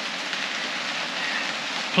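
Steady rain falling on a corrugated metal roof, an even hiss.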